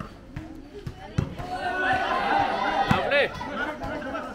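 Volleyball players and onlookers shouting and calling out during a rally, the voices swelling in the middle. Sharp thuds of the ball being struck come about a second in and again near three seconds.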